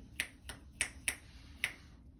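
Five short, sharp clicks a few tenths of a second apart, uneven in spacing, the third and fifth the loudest.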